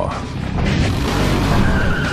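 A loud rushing, skid-like vehicle noise swells in about half a second in, with a brief squealing tone near the end, laid over background music with a steady low beat.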